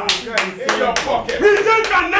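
Several sharp hand claps, unevenly spaced, mixed with men's voices.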